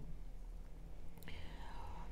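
Quiet room tone with a steady low hum, and a soft breathy hiss in the second half.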